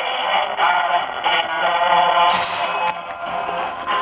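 Acoustic wind-up gramophone playing an old record, the music thin, with no deep bass or high treble. About halfway through a brief bright metallic ring sounds over it, and a sharp knock comes at the end as the playback stops.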